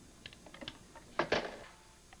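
Telephone handset being handled and hung up as a call ends: a few light clicks, then a louder clatter about a second in.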